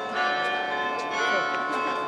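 Bells of a city hall tower carillon ringing, new bells struck about every half second over the long overlapping hum of those before.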